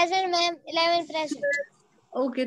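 A child's voice in drawn-out, sing-song speech, heard through a video call's audio, in three stretches with a short pause near the end.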